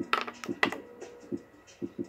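A plastic Sharpie marker, already snapped and held together, coming apart and its halves landing on the table: a few sharp clicks in the first second. Quiet background music with a soft beat runs underneath.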